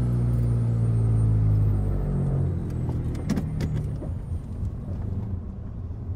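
Car engine sound effect in an audio drama: the taxi's engine running steadily as the car sets off, growing quieter after about two seconds, with a couple of faint clicks about three and a half seconds in.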